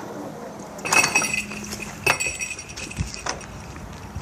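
Two bright, ringing clinks about a second apart, followed by a short dull knock about three seconds in.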